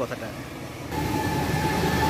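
A steady horn-like tone, held on one pitch over a rushing background noise, starts about a second in.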